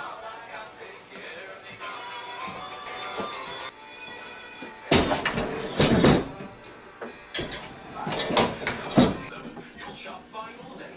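Background music, with a run of loud metallic clanks and rattles in the second half as the aluminium Alaskan chainsaw mill frame and chainsaw are handled and fitted together on a wooden workbench.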